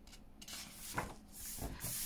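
A book's paper page being turned by hand, with a soft rustling and rubbing of paper and a light tap about a second in.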